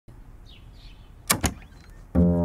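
Two quick, sharp clicks from a wooden door being opened, about a second and a half in, over faint room tone.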